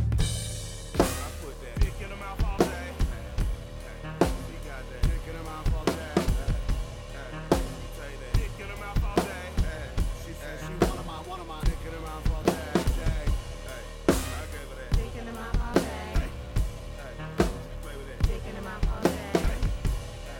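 Acoustic drum kit (DW drums, Zildjian cymbals) playing a slow hip-hop beat at around 70 bpm, with kick, snare and cymbal hits. It plays over an electronically produced backing track with sustained synth tones.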